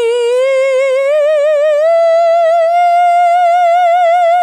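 A woman singing a sustained "ee" vowel with vibrato, stepping up in pitch note by note to the top of an octave and holding the top note. The vowel is given more space as it rises but stays an ee.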